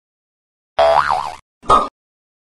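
Cartoon sound effects: one effect of about half a second whose pitch wobbles up and down, beginning about three quarters of a second in, then a shorter effect near the end.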